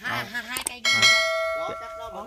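A single bright bell-like ding, a notification-bell sound effect, struck a little under a second in and ringing on as it slowly fades for about a second.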